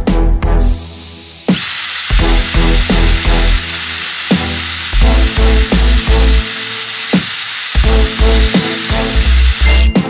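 Electric drill running at a steady speed with its bit in a hole in a wooden board: a steady high whine that starts about a second and a half in and stops just before the end, over background music with a beat.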